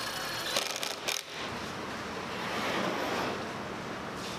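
Cordless drill/driver briefly spinning as it backs a screw out of an OSB panel, followed by two sharp clicks or knocks and then a few seconds of scraping handling noise.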